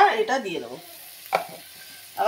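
Flat beans frying in a metal kadai, a faint steady sizzle, with one sharp knock of the metal spatula against the pan a little past halfway.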